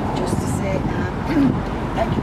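Indistinct voices of people talking, over a steady rumble of road traffic.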